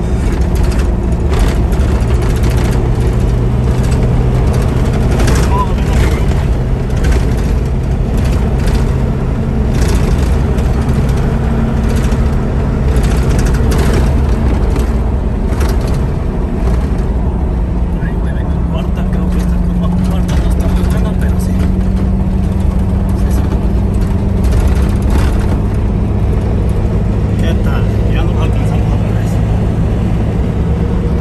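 Engine and road noise of a vehicle driving on a paved road, heard from inside: a steady low rumble with a constant engine note that changes pitch about halfway through.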